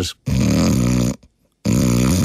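A man imitating loud snoring: two long snores, the second starting about a second and a half in.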